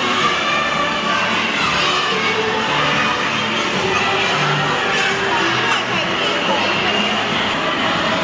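A crowd of young kindergarten children chattering and shouting at once, a dense, steady din of many small voices with music mixed in.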